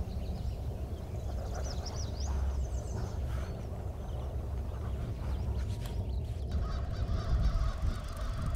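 Outdoor ambience: birds calling in short chirps over a steady low rumble.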